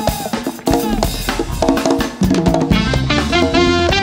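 Live band playing Chilote fusion: hollow-body electric guitar phrases over a drum kit, with a bass line coming in about a second in and the sound filling out with more instruments near the end.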